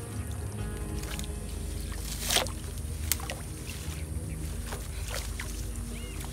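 Water sloshing and a few short splashes as hands work in shallow muddy water, the loudest a little over two seconds in, over a steady low rumble. Background music plays underneath.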